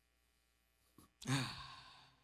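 A man's voiced sigh into a handheld microphone, coming about a second in after a small mouth click and fading away; the first second is near silence.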